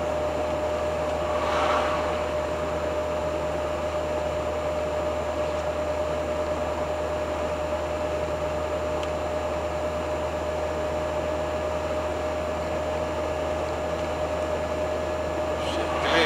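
Steady in-cabin drive noise of a 1985 Hobby 600 motorhome on a Fiat Ducato base cruising at about 70 km/h: engine drone and road rumble, with a thin steady tone running through it.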